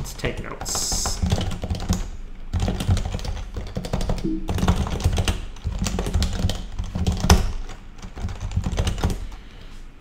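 Fast typing on a computer keyboard: rapid runs of keystroke clicks with brief pauses between commands.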